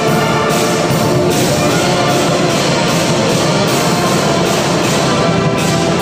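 Marching brass band playing loudly, a full section of brass instruments holding chords over a steady beat.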